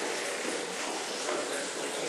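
Steady, low background noise with no distinct sound event.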